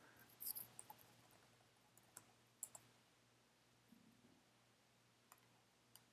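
Faint computer mouse and keyboard clicks: a quick cluster about half a second in, then a few single clicks between two and three seconds in.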